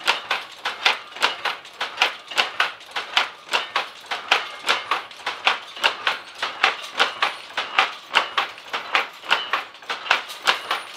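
Power loom with a dobby machine weaving at full speed: a steady, rapid rhythm of sharp clacks as each weft is picked across and beaten up.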